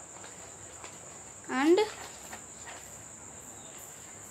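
A steady high-pitched insect trill, typical of crickets, with a few faint crackles of stiff paper being creased by hand.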